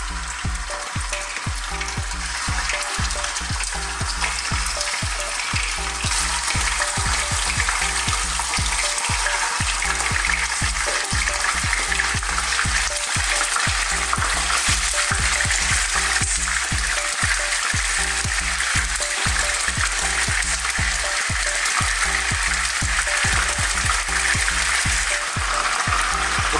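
Chopped chicken sizzling as it fries in hot oil in a pan. The sizzle grows fuller a few seconds in, as more pieces go into the oil, and then holds steady.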